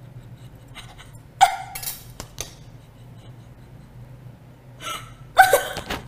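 A woman's short, breathy non-speech vocal sounds, one about one and a half seconds in and another near the end. Between them come a few light clicks of metal cutlery being set down on the counter.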